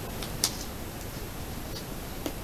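Fingers pressing and smoothing a sticker onto a paper album page: one light click about half a second in and a fainter tick near the end, over a steady low hiss.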